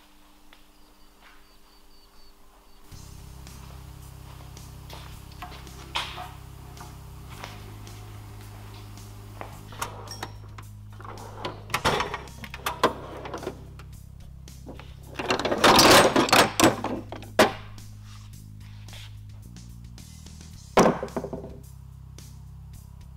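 Background music comes in about three seconds in, over the knocks and clatter of steel tool-chest drawers being opened and shut and tools being rummaged through, loudest in a burst about two-thirds of the way in; a last clunk comes near the end.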